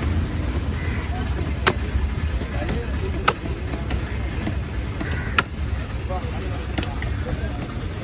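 Four sharp knocks, about one and a half to two seconds apart, of a fish-cutting knife chopping onto a wooden log block, over a steady low rumble of traffic and market noise.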